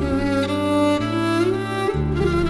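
Violin playing a slow, sliding melody over sustained bass guitar notes that change about once a second.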